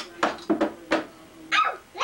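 Several short, sharp barks in quick succession, then a higher, gliding yelp about one and a half seconds in.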